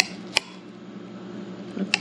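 Table knife and fork clinking against a ceramic dinner plate while cutting into a stuffed bell pepper: two sharp clinks near the start and another near the end.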